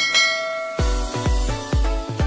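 A bell-like chime sound effect rings once and fades. About a second in, electronic music with a heavy, regular bass beat starts.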